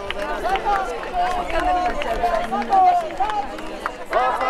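Crowd chatter: several people talking at once at close range, voices overlapping.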